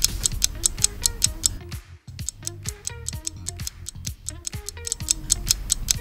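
Countdown music with a steady ticking clock beat, about four ticks a second, over a bass line and short melody notes, running while the answer timer empties. It drops out briefly about two seconds in.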